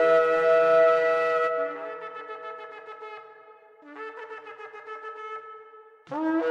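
A shofar (ram's horn) sounding a long held blast that fades after about a second and a half, then a second, softer blast about four seconds in.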